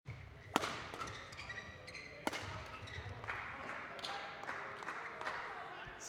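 Badminton rally: sharp cracks of rackets hitting the shuttlecock, the loudest about half a second in and another just after two seconds, with short high squeaks of court shoes, all echoing in a large sports hall.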